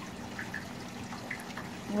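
Reef aquarium water trickling steadily, with a faint steady hum underneath.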